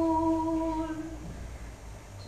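A lone voice holding one long wordless note at a steady pitch, ending a little past a second in.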